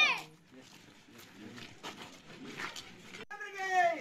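A voice speaking stops right at the start, leaving about three seconds of faint outdoor background with a few faint distant voices. Loud speech resumes near the end.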